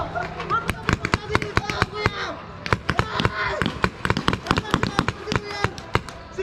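Paintball markers firing, many sharp pops in quick, irregular succession from several guns at once, with players' voices shouting among the shots.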